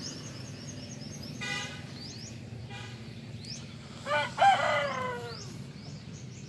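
A rooster crowing once about four seconds in, the loudest sound, with a falling tail; two shorter calls come before it. Small birds chirp throughout.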